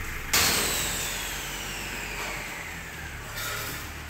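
A sudden loud metallic clang from a steel concrete fence-panel mold about a third of a second in, followed by a ringing whose tones slowly fall in pitch as it fades over about three seconds, over a steady low workshop hum.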